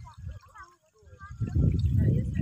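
Faint voices of people out in the shallow water, calling in short bits. From about a second and a half in, a loud low rumble takes over.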